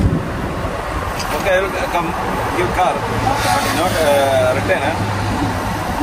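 A man talking at an open car door, his voice fainter than the close speech around it, over steady road-traffic noise and a low engine hum that sets in about halfway through.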